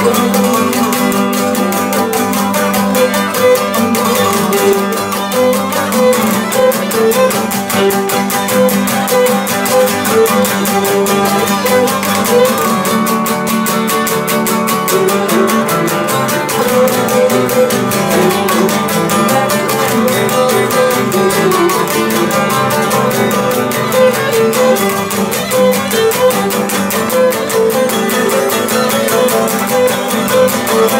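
Cretan lyra playing a bowed melody over two Cretan laouto lutes strumming the rhythmic accompaniment, an instrumental passage with no singing.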